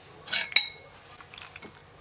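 Metal spoon scraping and clinking against a ceramic soup bowl: a short scrape, then one sharp ringing clink about half a second in, followed by a few faint taps.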